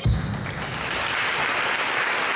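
Audience applause breaking out suddenly as a live song ends, then carrying on steadily.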